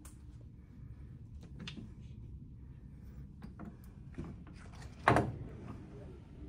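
A single loud thunk about five seconds in, with a few faint knocks and clicks before it, over a steady low hum of the ship's cabin.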